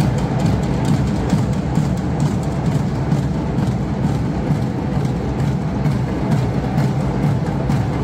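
Music driven by drums and percussion: a dense, steady beat of many quick strikes.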